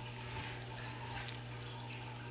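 Plastic spatula stirring thick, wet chili sauce in a skillet, a soft moist churning, over a steady low hum.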